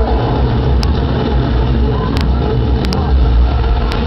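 Car engine sound effects from a film's soundtrack played loud over a concert hall's PA, a heavy low rumble. A few sharp clicks cut through it.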